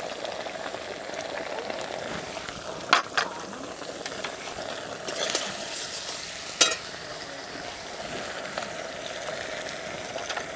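Onions, capsicum and green chillies sizzling steadily in hot oil and sauce in a metal wok, with a few sharp clicks and scrapes of a metal spatula against the pan as the mixture is stirred, mostly around the middle.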